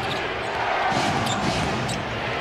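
Arena crowd noise with a basketball being dribbled on the hardwood court: a few short, sharp bounces over the steady hubbub.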